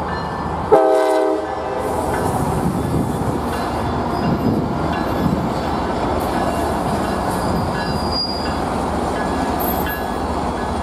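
Tri-Rail commuter train passing: a short horn blast about a second in, then the steady rolling rumble of the bilevel coaches on the rails.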